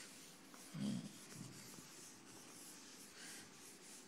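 Faint chalk strokes scratching on a blackboard, with a brief low voice sound about a second in.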